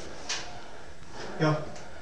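A man's voice calling "Yo" over a steady background hiss, with a single short knock shortly before it.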